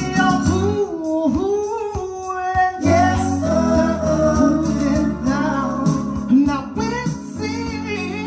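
A man singing a slow soul ballad into a microphone, his melody sliding and bending between notes, over instrumental backing.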